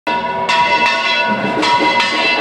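Church tower bells being swung full circle (volteo), about four strikes in two seconds with each ringing on into the next, pealing to announce the start of the fiestas.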